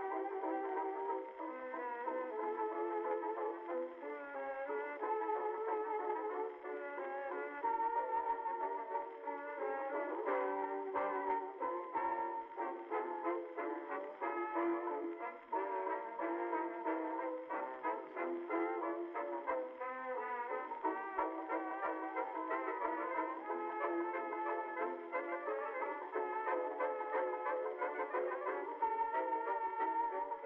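Instrumental background music, a melodic tune that plays on at an even level.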